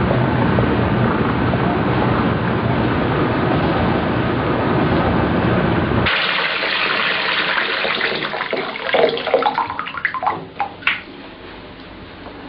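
A steady rumbling noise cuts off abruptly about halfway through, replaced by water running from a bath tap, with rising gurgling tones before it dies away near the end.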